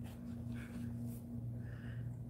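A steady low hum, with faint, short soft rustles of a paper towel being handled and quiet breaths over it.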